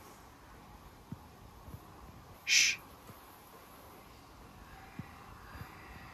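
Faint, volume-boosted hiss with a single short, breathy 'shh'-like burst about two and a half seconds in, plus a few faint clicks. It is heard as indistinct whispers.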